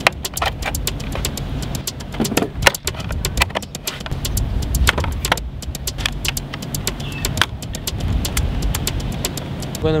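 Rapid, irregular clicks and clatter of power plugs, cables and electronic gear being handled and set down on a wooden table, over a steady low rumble.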